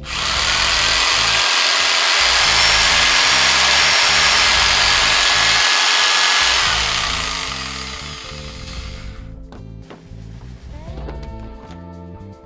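Skil corded jigsaw running with no workpiece, powered through a 1000-watt pure sine wave inverter, for about seven seconds, then fading out over about two seconds. Background music plays underneath.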